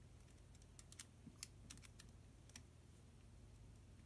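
Faint, scattered small clicks of a small screwdriver's metal tip knocking and scraping at a tiny screw in the plastic collar of a toy remote, over near silence.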